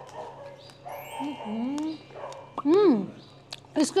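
A dog whining, with a short rising-and-falling bark-like call near the three-second mark.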